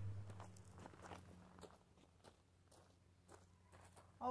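Near silence with a low steady hum; faint footsteps crunching on gravel fade out over the first second and a half.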